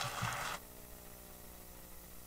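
Paper being handled at a lectern microphone, a brief rustle in the first half second, then faint room tone with a steady low hum.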